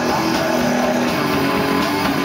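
Heavy metal band playing live: electric guitar, bass guitar and drum kit in a steady instrumental passage without vocals.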